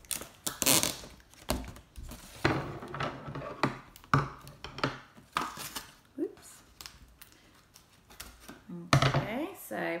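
Sellotape being pulled off the roll and snipped with scissors: a string of short ripping and snipping sounds, thickest in the first half and sparser later.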